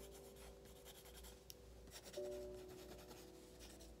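Pen writing on a paper notepad close to the microphone: faint, irregular scratching strokes. Underneath are soft, held background music tones that shift about halfway through.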